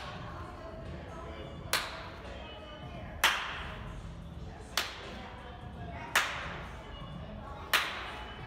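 A coach's single hand claps, five of them about a second and a half apart, each a sharp crack with a short echo. Each clap is the cue for the athlete to switch feet in a wall-drive sprint drill.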